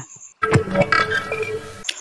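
A short music sting, about a second and a half long, between news stories: held tones over a low rumble with a few sharp hits. It starts about half a second in and cuts off just before the end.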